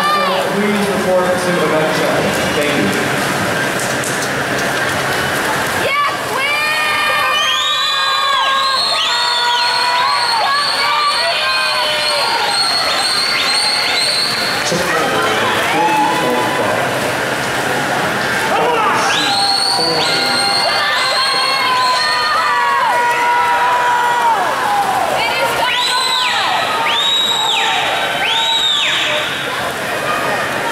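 Spectators and teammates cheering and yelling at a swimming race, with bursts of shrill, high-pitched repeated calls over steady splashing from the swimmers.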